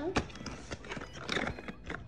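Irregular clicks and knocks of an item being worked out of tight packaging by hand, with a voice heard briefly.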